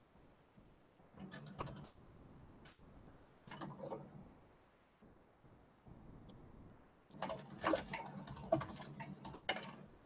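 Soft clicking and tapping in three short bursts, the longest near the end.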